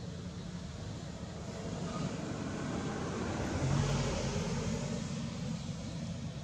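A vehicle passing by: a steady low rumble, with its noise swelling to a peak about four seconds in and then fading.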